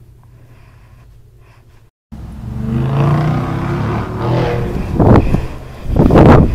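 Quiet room tone, then after a cut a loud outdoor rumble with two sharp louder swells near the end.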